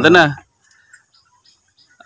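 A short spoken phrase in Bengali that ends about half a second in, followed by near silence.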